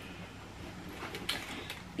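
Faint rustling of paper and cloth as a sheaf of papers is pushed into a fabric tote bag, with a few light taps and brushes, one about a second in.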